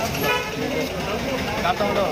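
A short vehicle horn toot about a quarter second in, over street traffic, with a man talking.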